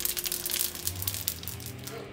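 Filled wonton rangoons frying in a pan of hot vegetable oil: a dense crackle and sizzle of spitting oil that thins out toward the end.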